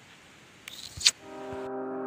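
Faint background hiss, then a brief scuffing noise and a sharp click about a second in. Slow ambient music with long sustained tones then fades in.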